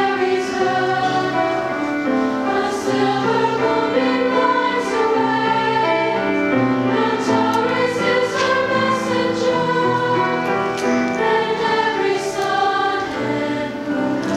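A high-school girls' choir singing in harmony, holding long notes that change every second or so, with crisp consonants of the words coming through several times.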